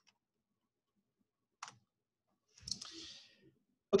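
A single sharp click about a second and a half in, typical of a key or mouse button advancing a lecture slide. It is followed near three seconds by a short, soft rushing noise, with very quiet room tone around them.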